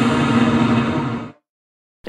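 Intro logo sting: a noisy sound effect with a steady tone and a pitch that settles lower, cutting off suddenly just over a second in.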